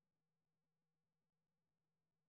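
Near silence: a pause after the narration with nothing audible.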